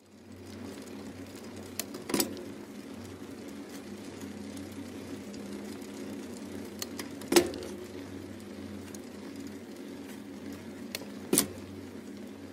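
Steady street traffic and riding noise with three sharp knocks, about two, seven and eleven seconds in; the middle knock is the loudest.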